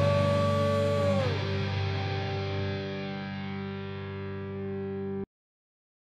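The band's final chord on distorted electric guitar, held and slowly dying away, with a high note sliding down in pitch about a second in. The sound cuts off suddenly about five seconds in.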